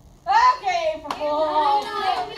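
High-pitched voices shouting and squealing, starting suddenly about a quarter second in and overlapping as more join, with one sharp clap about a second in.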